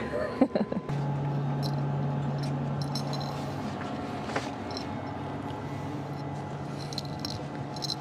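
Space station cabin ventilation and equipment hum: an even hiss with two low steady tones, and a few light clicks. A short bit of voice at the very start, cut off about a second in.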